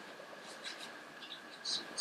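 Faint, scattered taps and clicks of a laptop keyboard and trackpad, over a steady faint room hum.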